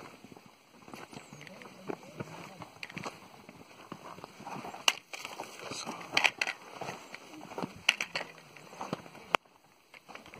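Hikers' footsteps on a dry, stony dirt trail: irregular crunches and sharp clicks of boots and loose rocks, with faint indistinct voices behind. A hard click near the end, then the sound cuts off briefly.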